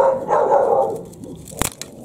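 A dog barks in a drawn-out call during the first second. Then, about one and a half seconds in, comes a single sharp snap as steel bypass pruning shears cut through a hard, woody branch.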